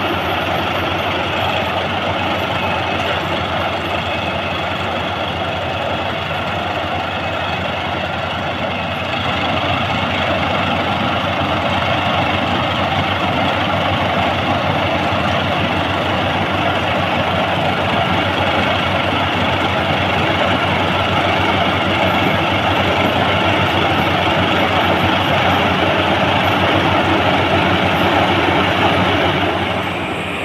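Crown CCH 106 rice combine harvester running steadily under load as it cuts a standing rice crop, its engine and working mechanism giving a continuous dense mechanical noise. The noise grows a little louder about a third of the way through.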